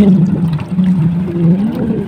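A man's low voice humming or drawing out a sound without words, wavering slowly up and down in pitch.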